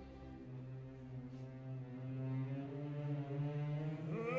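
Opera orchestra holding a sustained low chord that swells steadily louder.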